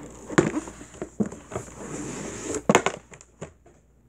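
Thick cardboard box set being handled and slid out of its sleeve: a scraping rustle broken by several sharp knocks, the loudest two close together near three seconds in.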